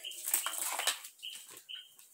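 Handling noise as a cloth measuring tape and a crocheted bag are picked up and moved: soft rustles and small clicks. Four or five short, high chirps sound faintly behind it.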